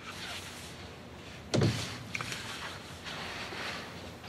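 A door shuts with a single loud bang about a second and a half in, followed by a few faint clicks over low room noise.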